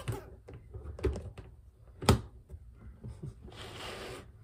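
Close handling noises: a few short knocks, the loudest about two seconds in, then a burst of rustling near the end.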